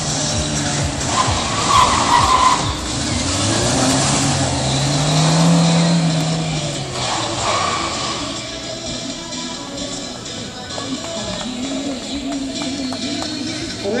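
A VAZ 2113 (Lada Samara) hatchback's engine revving hard through a slalom run. The engine pitch climbs and falls off around the middle, and the tyres squeal twice, once early and again about seven seconds in. Music plays underneath.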